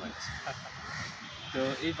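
A bird calling during a pause in the talk, over steady outdoor background noise; a man's voice starts again near the end.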